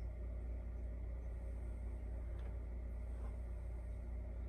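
Quiet room tone with a steady low hum, and two faint brief rustles a little past the middle.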